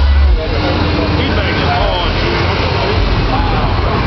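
Heavy subwoofer bass from a car audio system of four 15-inch FI BTL subwoofers drops away sharply a moment in, leaving a lower bass rumble under crowd chatter.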